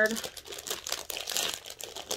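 Packaging crinkling and rustling as it is handled, with a run of small irregular crackles.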